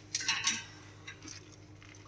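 Light metallic clinks of steel bolts and fittings being handled at the handle mount of a chain trencher during assembly: two sharper clinks in the first half second, then a few fainter ones.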